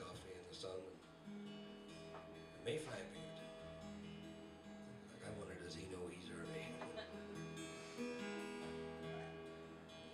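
Solo acoustic guitar playing, with plucked notes and strummed chords ringing on and changing every second or two.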